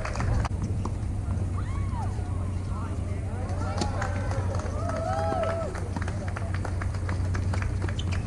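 Tennis ball struck by rackets and bouncing on a hard court during a doubles rally: separate sharp pops a second or more apart, then a quick run of them near the end as the players volley at the net. Voices talk faintly in the background.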